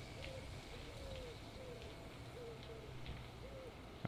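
A pigeon cooing faintly: a run of short, soft low coos, about two a second.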